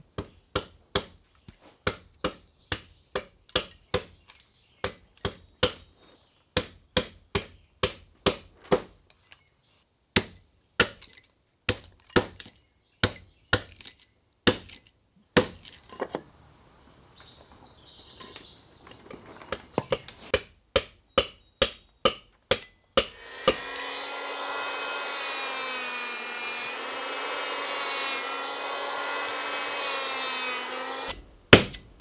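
A hand adze chops into the hull timber of a wooden boat, fairing the back rabbet, with sharp strikes about two a second and a few short pauses. About 23 seconds in, a handheld electric power planer starts and runs steadily, cutting the wood.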